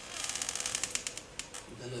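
Plastic water bottle being handled, crackling in a quick run of sharp clicks that lasts about a second and a half.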